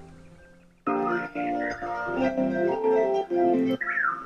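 Recorded harp music with birdsong behind it, played back through an audio editor. A soft, fading passage of plucked harp notes cuts off suddenly about a second in and jumps to a much louder passage, with birds calling over the harp.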